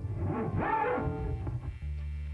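Live band starting a song: a click, a few brief sliding tones, then near the end a sustained chord with a low bass note comes in and holds steady.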